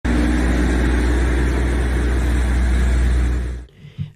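Heavy truck towing a lowboy trailer past, with a steady low engine rumble and road noise that cuts off suddenly shortly before the end.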